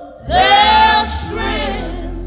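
Mixed gospel vocal group singing on a 1957 recording. After a brief breath, the voices come in loudly about a third of a second in on a held note with vibrato, then ease into a softer sustained chord.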